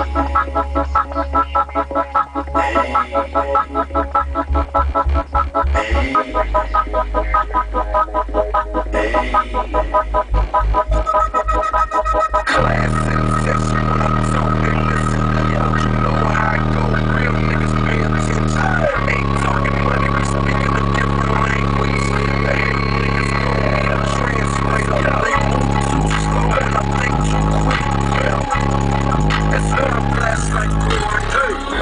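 A song with heavy bass played loud through a car stereo's two JBL 12-inch subwoofers, driven by a new amplifier and heard from inside the car. Deep, held bass notes change pitch every few seconds, and the music turns fuller and steadier about twelve seconds in.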